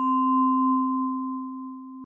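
A single steady ringing tone, low and pure with a fainter higher tone above it, sounding like a struck tuning fork. It slowly fades and then cuts off. It serves as a cue tone between the narration and a spoken source citation.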